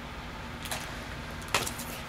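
Steady hum of a home furnace running, with two brief rustles of an LP in a plastic outer sleeve being handled, the second louder, about a second and a half in.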